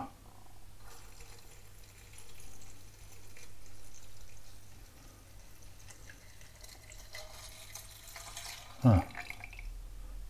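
Spirit alcohol poured from a bottle onto menthol crystals in a 250 ml glass Erlenmeyer flask: a light, uneven trickle and splash. Near the end a faint tone rises in pitch as the flask fills.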